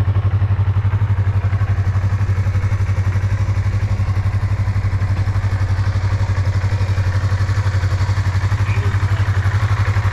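Yamaha R3's 321 cc parallel-twin engine idling steadily, with an even, unchanging beat.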